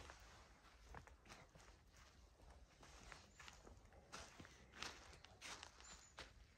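Faint, irregular footsteps on dry ground covered in pine needles and bark.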